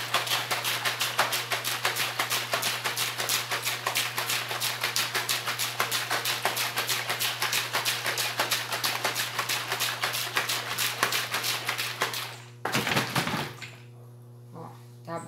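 A plastic bottle of homemade soap mix (oil and caustic soda solution) shaken hard by hand, the liquid sloshing against the plastic in a rapid, even rhythm to blend it as it thickens. The shaking stops near the end, followed by a brief rougher handling noise.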